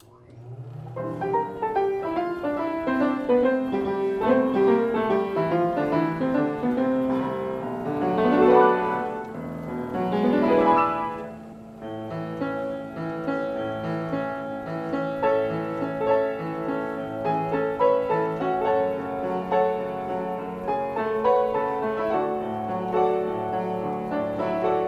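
Chickering-made Cabaret player upright piano playing a paper music roll on its own: a lively, busy piano tune with two quick upward runs near the middle, then steady chords over bass notes.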